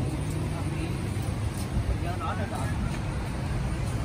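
Outdoor street ambience: a steady low rumble with faint, distant voices.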